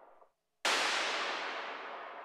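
Percussion one-shot noise-hit sample from the Delicata sound effects library: a sudden burst of noise about half a second in, decaying slowly as its brightness fades. Just before it, the tail of the previous noise-tap sample dies away.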